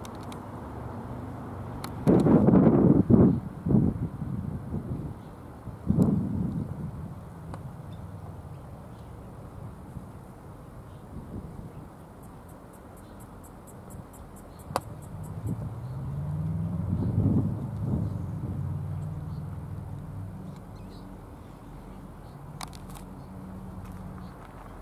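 Diesel freight locomotives G512 and VL360 running with a steady low engine drone. The drone swells and rises in pitch about sixteen seconds in, and there are a few louder bursts of low rumble in the first six seconds.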